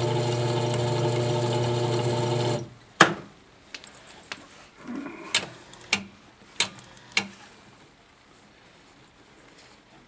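920B toroid winding machine's motor running with a steady hum, which cuts off about two and a half seconds in. A sharp click follows, then a handful of lighter clicks and taps as the shuttle and wire are handled.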